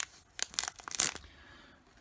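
A foil Pokémon card booster pack wrapper being torn open across the top: a quick run of crackly rips and crinkles, loudest about a second in.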